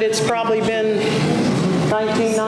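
Speech: a person talking, with no other sound standing out.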